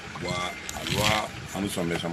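A man speaking in bursts of words, with steady outdoor background noise behind his voice.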